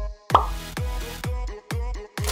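Electronic background music with a steady deep kick-drum beat, about two and a half beats a second, under sustained synth tones, with a short pop sound effect shortly after the start.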